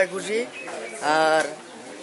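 A man speaking in a pause between phrases, with one held vowel about a second in.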